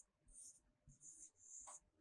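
Faint scratching of a stylus writing on an interactive whiteboard screen: a few short pen strokes with brief gaps between them.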